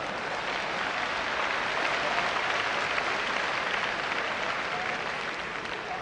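Audience applauding in a hall, building up at the start, holding steady and thinning out near the end.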